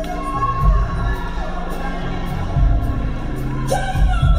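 Live gospel concert music: the band holds sustained chords over deep bass notes that swell a few times, with singing and crowd noise.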